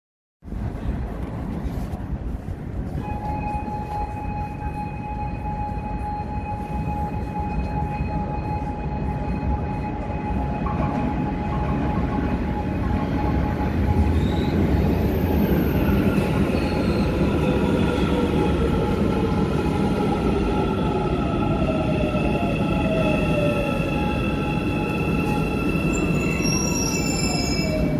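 Cairo Metro Line 2 train arriving at an underground station platform. The rumble builds as it approaches and is loudest about halfway through, with a steady high ringing tone from the rails. The electric motors then whine downward in pitch as the train brakes to a stop.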